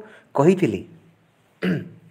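A man's voice: a short spoken word about half a second in, then after a pause a second brief vocal sound near the end.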